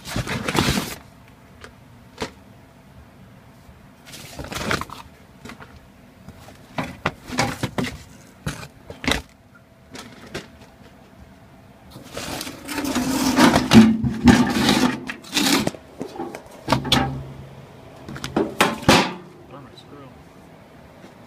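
Irregular knocks, rustles and scrapes of a handheld camera being moved and handled, in uneven clusters, busiest a little past the middle.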